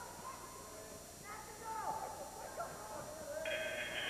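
Faint shouting in the background. Near the end a scoreboard buzzer starts, a steady electronic tone, sounding the end of a wrestling period.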